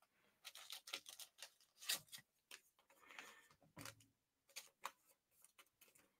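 Faint, irregular clicks and rustles of trading cards being handled, the card stock ticking against fingers and other cards.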